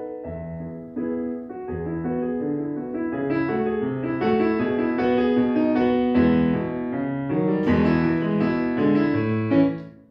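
Digital piano playing a flowing melody over low chords. The correct notes come from a melody-assist box that follows the player's key presses. The playing grows fuller a few seconds in and stops suddenly near the end.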